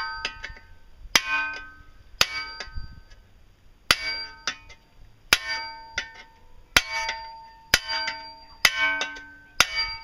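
A hammer strikes a steel chisel held against a steel shovel's neck, about one or two blows a second at an uneven pace, sometimes in quick pairs. Each blow rings like a struck metal bell.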